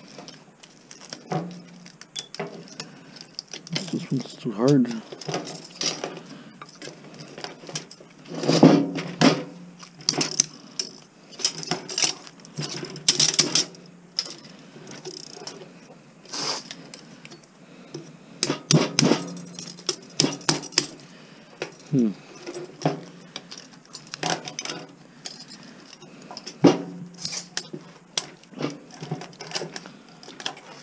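Irregular metallic clinks, knocks and scrapes of hand tools prying and cutting at a small fan motor's steel core and copper windings.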